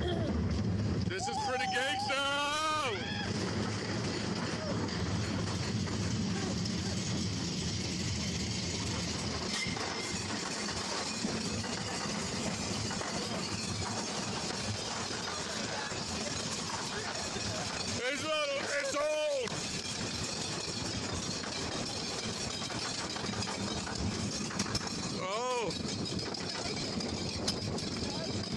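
The Giant Dipper's wooden roller coaster train rumbles along its track in a steady running noise. Riders give high, wavering whoops about two seconds in, again around eighteen seconds in, and briefly about twenty-five seconds in.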